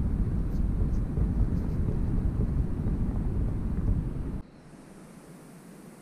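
Strong wind buffeting the microphone on the beach: a loud, dense low rumble that cuts off suddenly about four and a half seconds in, leaving quiet indoor room tone.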